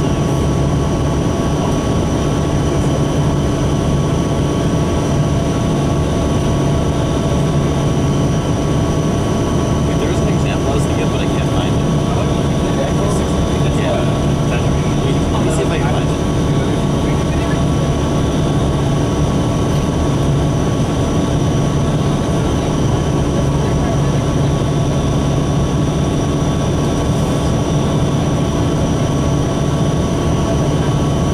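Cabin noise inside a 2003 New Flyer DE40LF diesel-electric hybrid bus under way: its Cummins ISB diesel and Allison EP40 hybrid drive run steadily over road rumble, with a few constant held tones.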